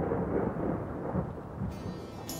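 A deep, thunder-like rumble that fades down steadily, the opening of the song's intro. The first pitched notes of the music come in near the end.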